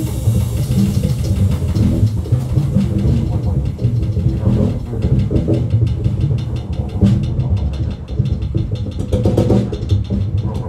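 Live jazz quartet playing, recorded roughly on a phone, with a heavy, rumbling low end from bass and drums. A voice comes through the vocal microphone, and cymbal and drum strikes become rapid near the end.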